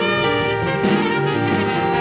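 Live jazz septet playing: trumpet, flugelhorn, trombone and alto saxophone play a moving line together in harmony over piano, double bass and drums.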